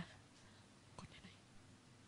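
Near silence: room tone in a quiet room, with one faint click about a second in.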